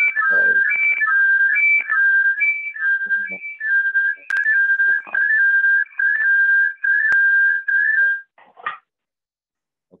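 A loud whistled tune: clear, held notes stepping up and down between a few pitches, repeating, then stopping about eight seconds in.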